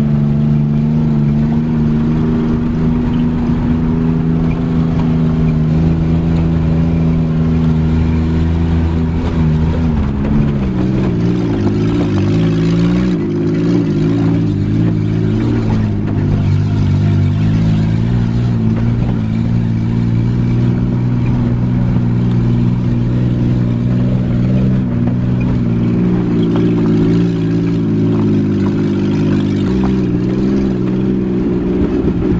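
Vehicle engine running under load, heard from inside the cab while driving on an unpaved gravel road. The engine note holds steady, shifts about ten seconds in, and rises again near the end.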